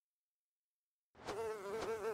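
Dead silence for about a second, then a buzzing, insect-like tone starts, its pitch wobbling quickly up and down in a regular vibrato.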